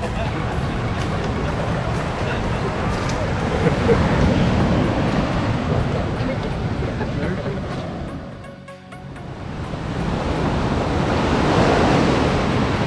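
Steady rush of sea surf mixed with wind noise, with faint voices underneath. It fades down briefly about nine seconds in, then rises again.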